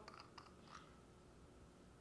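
Near silence, with a few faint clicks in the first second as the cap of a small bottle is unscrewed.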